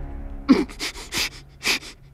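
A man's pained breathing: a quick run of about four sharp, wheezing gasps, the first with a short falling groan, from the severe pain of a giant desert centipede bite.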